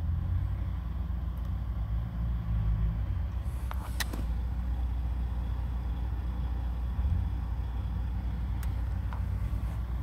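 Low, steady rumble of a vehicle engine running, with a couple of faint clicks about four seconds in and another near the end.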